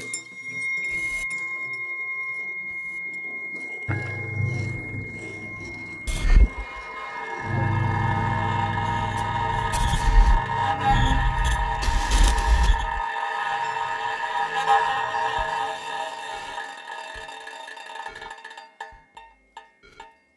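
Freely improvised music for laptop electronics with snare drum and banjo: a thin, steady high tone at first, joined about four seconds in by a low droning rumble. A dense cluster of held tones swells over the rumble and cuts back about thirteen seconds in, thinning to scattered small clicks near the end.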